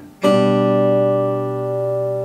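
Crafter Kage-18 acoustic guitar with a G/B chord on the 5th, 3rd and 2nd strings, struck once about a fifth of a second in and left to ring, slowly fading.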